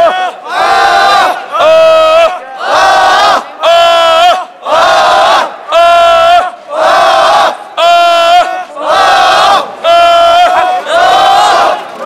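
A crowd of men chanting a protest slogan in unison, loud shouted phrases repeating at about one a second.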